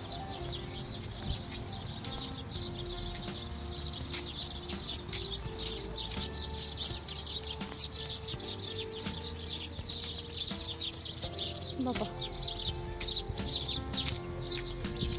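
Many small birds chirping at once in a continuous dense chorus, over soft background music of long held notes.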